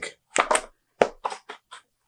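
Pages of a thick hardcover comic omnibus flipped rapidly by hand: a quick run of about six short papery flicks. The pages turn freely, with no cracking and no pages sticking together.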